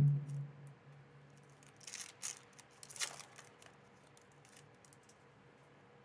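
A foil booster pack wrapper being torn open and crinkled: a few short rustling tears, the loudest about two and three seconds in.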